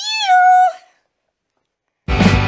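A woman's high-pitched drawn-out vocal note that rises and then holds, cutting off before a second has passed. Dead silence follows.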